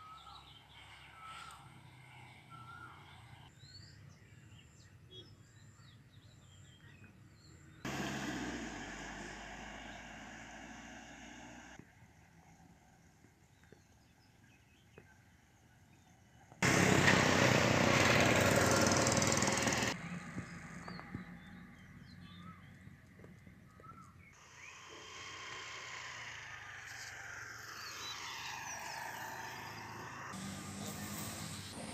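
Outdoor background noise in several abruptly cut segments. There is a loud burst of noise lasting about three seconds just past the middle.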